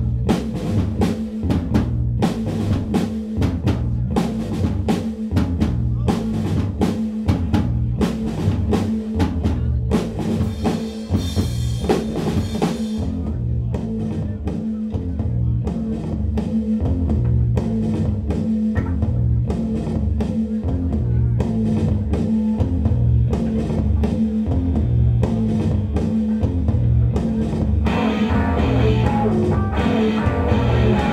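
Rock band playing an instrumental intro: a steady drum-kit beat with kick and snare over low repeating bass notes, with a cymbal wash about a third of the way in. A distorted guitar comes in near the end.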